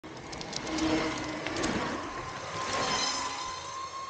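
Electric skateboard rolling on asphalt: a steady wheel rumble with a thin motor whine running through it and a few light clicks in the first second and a half.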